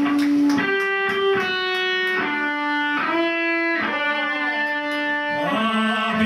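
Live rock band starting a song: an electric guitar plays a slow melody of long held notes with slides between them. Near the end a singing voice comes in.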